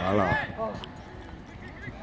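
A young footballer's loud whooping cheer, its pitch wavering up and down for about half a second, celebrating a goal; fainter shouts from other players follow near the end.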